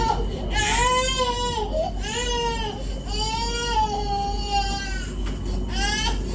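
A baby crying in a run of repeated wails, each rising and then falling in pitch and lasting about a second, with one longer cry in the middle.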